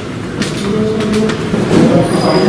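Footsteps of several people climbing an indoor staircase, a few sharp steps standing out, over indistinct voices.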